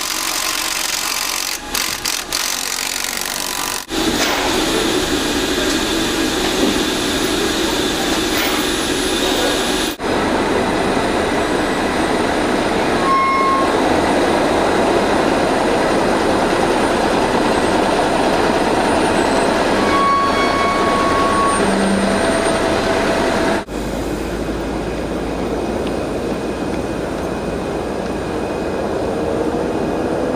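Steady heavy-vehicle noise, a truck engine and rolling wheels, that changes abruptly several times, with a few short beeps in the middle.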